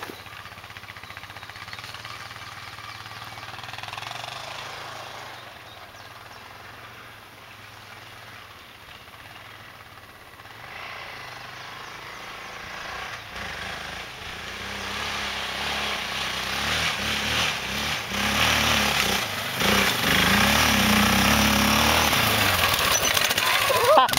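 Quad bike engine drawing nearer: faint at first, then growing steadily louder over the second half, its note rising and falling as it is revved.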